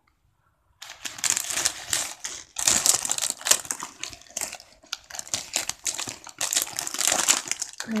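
Plastic sweet and biscuit wrappers crinkling as packets are handled and moved about, in about four bursts after a brief silence at the start.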